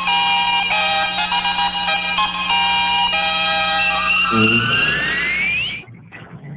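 Electronic radio jingle: a quick melody of bright synthesized tones stepping between notes, ending in a rising sweep that cuts off suddenly near the end.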